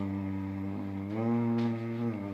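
A man humming low, long-held notes of a slow melody, his voice gliding up a step about a second in and holding there.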